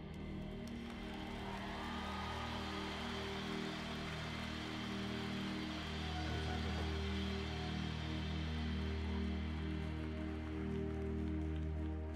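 Soft ambient worship-band intro music: long sustained chords held steady, with a deep bass note swelling in about halfway through and no drums playing.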